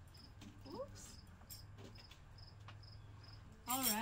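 A cricket chirping steadily, about two short high chirps a second, with a few faint knocks as a guitar is handled. A woman's voice starts loudly near the end.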